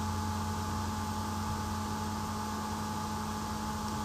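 Steady electrical hum with a faint hiss: background noise of the recording, with no other sound.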